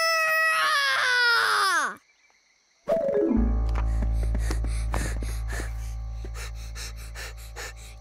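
A cartoon lion's long, wavering voiced moan that falls in pitch and stops about two seconds in. After a second of silence, background music starts with a deep held bass note under quick, light notes, slowly fading.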